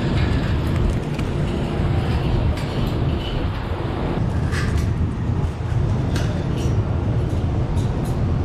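A steady low rumble with a few short, sharp clicks scattered through it.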